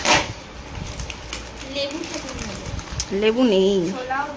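A plastic snack packet crinkling and rustling as it is handled, with scattered sharp clicks. A woman's voice speaks briefly near the end.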